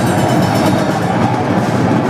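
Live death-thrash metal band playing: distorted electric guitars riffing fast over bass and drums, loud and dense, without cymbal crashes in this stretch.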